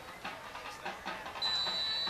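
Faint murmur of a football crowd, then about one and a half seconds in a steady, high-pitched whistle blast lasting under a second: a referee's whistle as the teams line up for the next play.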